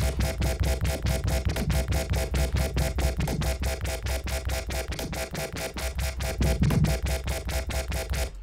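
Electronic dubstep bass from a software synthesizer with a heavy sub layered underneath, playing back and pulsing rapidly at about six or seven pulses a second. Partway through, a broad midrange cut is dialled in on the master EQ to clear out the extra build-up.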